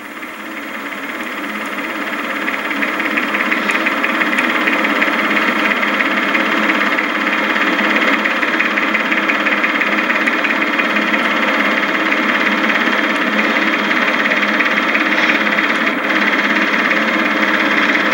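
Super 8 film projector running: a steady mechanical whir with a fast fluttering clatter from the film mechanism. It grows louder over the first few seconds, then holds steady.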